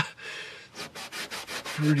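Cloth rag rubbed hard back and forth over the plastic top of a truck dashboard, ending in a run of quick, even strokes.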